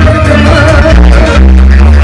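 Loud live band music played through a stage sound system, with a heavy steady bass and a melody line over it.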